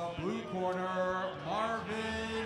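A man's voice over the arena's public-address system, drawing words out into long, held, sing-song tones in the manner of a boxing ring announcer's introduction.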